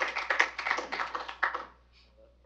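Scattered audience applause, separate claps at an uneven rhythm, dying away about a second and a half in.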